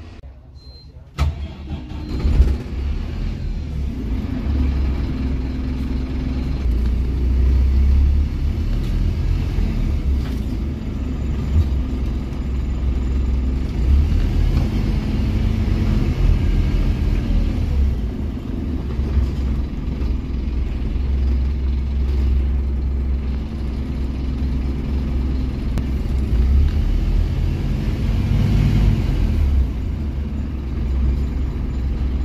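Onboard sound of a Scania N270 single-deck bus driving: from about a second in, a steady low engine drone that rises and falls as the bus pulls away and runs along the street.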